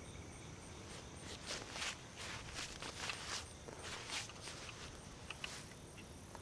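Faint, soft footsteps on grass, an even walking pace of about two steps a second.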